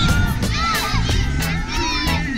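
Many children shouting and cheering together, their high voices overlapping, with music playing in the background.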